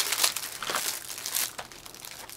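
Small clear plastic bags of LEGO pieces crinkling as they are handled and pulled open by hand: a sharp snap at the start, uneven rustling, and a louder burst of crinkling about a second and a half in.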